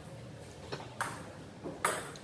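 Celluloid-type table tennis ball clicking off the bats and table in a rally: a few sharp ticks, the loudest near the end.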